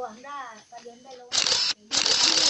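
A high-pitched voice vocalizing briefly, then from about a second and a half in, loud rough scraping and rubbing as a hand and cloth brush over the phone's microphone. The noise stops for a moment and starts again.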